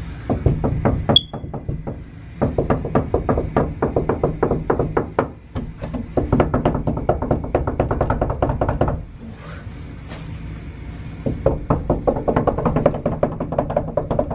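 Fists pounding rapidly on a closed interior panel door, several knocks a second, in long runs broken by short pauses.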